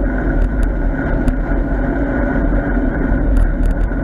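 Wind rumbling steadily on the microphone of a camera on a bicycle being ridden along a wet road, with a steady hum under it.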